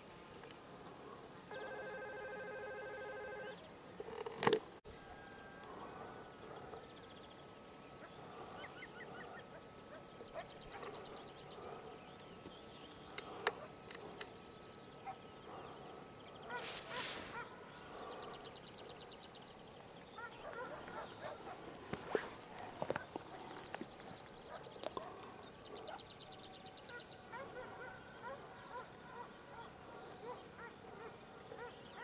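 Mountain countryside ambience: many faint bird calls scattered throughout over a steady, high, evenly pulsed insect chirring. About two seconds in, a steady horn-like tone sounds for about two seconds, followed by a single sharp click.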